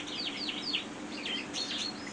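Many caged canaries and other finches chirping and twittering together: quick, short, high chirps that sweep downward and overlap, over a faint steady hum.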